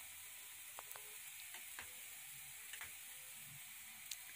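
Pork pieces faintly sizzling as they fry dry in a pot, rendering in their own fat with no oil added, with a few small ticks.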